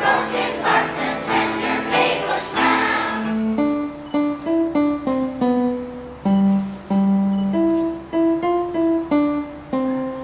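A children's choir singing with electronic keyboard accompaniment. About three seconds in the singing stops and the keyboard carries on alone with a melody of separate notes.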